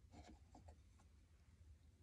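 Near silence with a few faint rubs and light clicks in the first second, as a small wooden tablet piece is picked out of a heart-shaped box.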